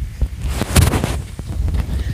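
Wind rumbling on a handheld camera's microphone while walking outdoors, with a loud gust about three-quarters of a second in.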